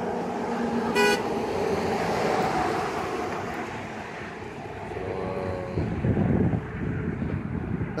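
Road traffic, with a short vehicle horn toot about a second in and a vehicle passing more loudly around six seconds in.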